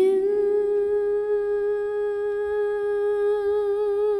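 A woman's singing voice slides up into one long held note with no accompaniment, the note wavering with vibrato near the end.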